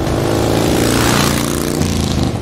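A motor vehicle engine running steadily, with a rushing whoosh that swells about a second in.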